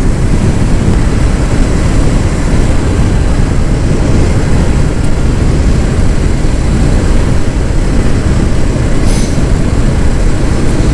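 Steady wind rush and road noise from a Kawasaki Vulcan S 650 motorcycle cruising at highway speed, heard on a handlebar-mounted action camera. The wind on the microphone covers most of the engine's sound.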